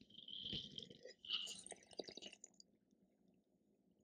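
Faint sipping of wine from a glass, with soft slurping and mouth sounds as it is tasted, dying away about two and a half seconds in.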